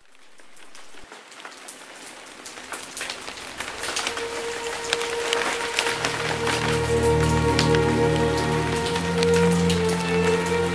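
Rain falling, with many close individual drops ticking, fading in from silence and growing steadily louder. Soft music with long held notes comes in under it about four seconds in, and low bass notes join around six seconds.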